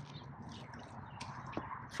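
Quiet pause: faint background noise with a couple of soft clicks.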